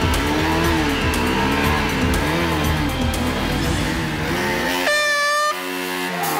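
Motorcycle engines revving up and down in slow swells as the riders feed throttle against the clutch to crawl and balance at walking pace, with background music over them. About five seconds in, a bright held tone sounds for about half a second and the low engine rumble drops out.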